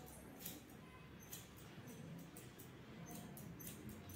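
Hairdressing scissors snipping through a section of wet hair: a run of faint, short, irregular snips.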